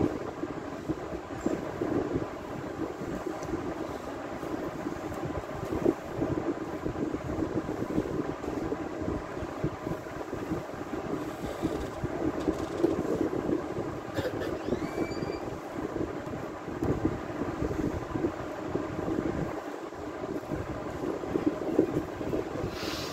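Steady low rumbling background noise with no voice.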